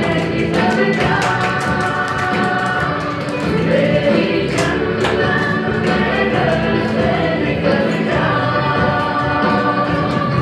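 Music: a song with several voices singing together over instrumental backing, played steadily throughout.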